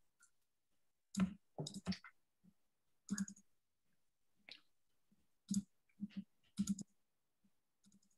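Computer clicking: a dozen or so short, sharp clicks in small clusters of one to three, spread over several seconds, like someone searching through files on a computer.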